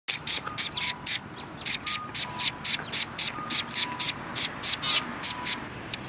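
A flock of Eurasian tree sparrows chirping: a rapid, continuous run of short, sharp chirps, about four a second, from several birds at once.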